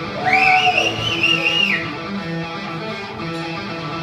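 Recorded rock music led by electric guitar playing over loudspeakers for an air guitar routine. A loud, high, wavering whistle rises in over the music near the start and falls away after about a second and a half.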